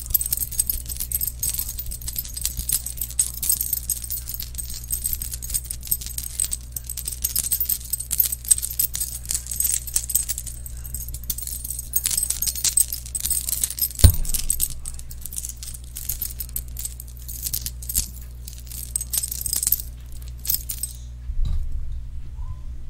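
Metal chain links jingling and clinking up close to the microphone as the chain is shaken and dangled, with one sharp knock about two-thirds of the way through. The jingling thins out near the end.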